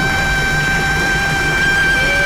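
A woman's voice holding one long, steady high note over live band backing, with bass and drums underneath; the note wavers slightly as it nears its end.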